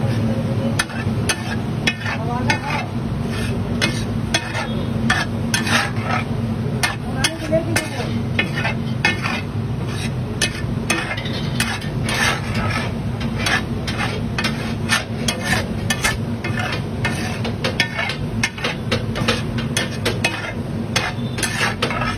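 Metal spatulas scraping and clinking on a large flat tava griddle as rice pulao is stirred and chopped, with many quick, irregular clicks over a steady low hum.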